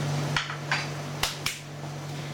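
Four sharp clicks and knocks of a utensil against dishes, all in the first second and a half, over the steady hum of a running gelato batch freezer.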